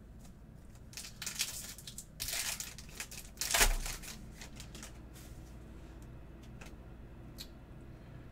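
Foil wrapper of a Topps Marvel Chrome trading-card pack being torn open and crinkled by hand. It comes in several rustling bursts over about three seconds, the loudest near the middle with a soft bump.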